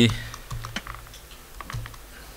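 A few light, irregular key presses on a laptop keyboard, spread over about a second and a half.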